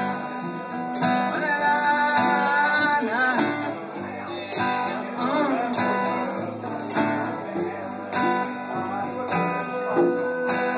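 Acoustic guitar strummed steadily, with a man singing long held notes that waver in pitch during the first half or so.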